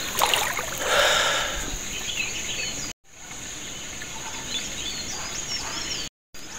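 Shallow river flowing with a steady rush of water, with small birds chirping now and then. The sound cuts out briefly about halfway through.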